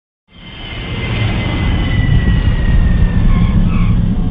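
Jet airliner engines: a heavy rumble that fades in quickly at the start, with a high whine slowly falling in pitch.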